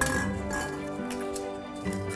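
Instrumental background music, with a draw ball clinking against a glass bowl as it is picked out near the start.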